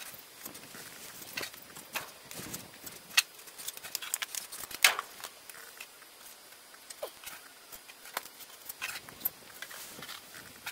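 A trowel tapping and scraping against stone as mortar is packed into the joints, in irregular sharp clicks, the loudest about five seconds in.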